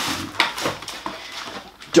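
Rustling and knocking of grocery packaging as items are handled and lifted out of a shopping bag, with a sharp click about half a second in.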